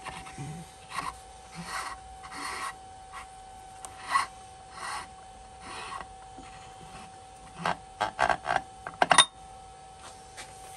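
A steel pin being worked by hand in a freshly sleeved shaft bore of an LT230 transfer case: short metal-on-metal scrapes roughly once a second over a faint steady hum. Near the end, a quick run of metallic clicks and one ringing clink as the pin comes out.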